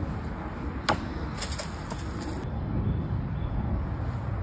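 Low wind rumble on the microphone, with a single sharp knock about a second in and a short patch of high crackling soon after.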